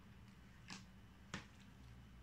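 Near silence with two short soft clicks of eating by hand, a little over half a second apart, the second louder.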